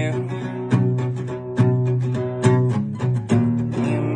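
Acoustic guitar strummed in a slow, steady rhythm, a strum a little under once a second, each chord left ringing until the next.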